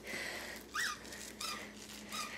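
Squeaker inside a plush dog toy squeezed: a faint squeak that rises and falls a little under a second in, then two shorter, fainter squeaks.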